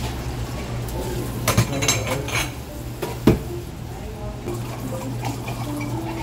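Ceramic cups and plates clinking and knocking together as they are washed under a running tap, with the water running steadily. A few clinks come together about a second and a half to two and a half seconds in, then one louder knock just after three seconds, over a steady low hum.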